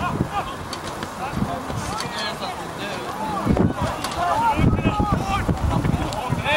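Distant shouting from players and the sideline during open play in a rugby match: short overlapping calls, louder in the second half, with wind buffeting the microphone.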